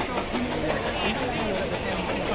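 People talking in the background over a steady hiss of ambient noise; no animal call stands out.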